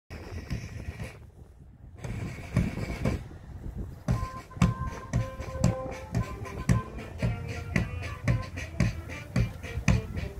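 Parade march music with a steady drum beat of about two beats a second, after a short pause near the start; held melody notes come in about four seconds in.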